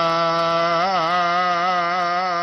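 Gurbani kirtan: a male voice holding one long sung note with vibrato over a steady low drone.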